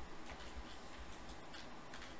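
A few scattered, light clicks of computer keystrokes, irregular and faint, over a low hum.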